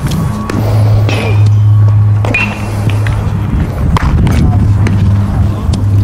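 A loud, steady low hum with a few sharp clicks over it.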